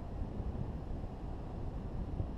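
Steady rush of wind buffeting the microphone as a hang glider flies freely through the air, a low, even rumble with no engine note.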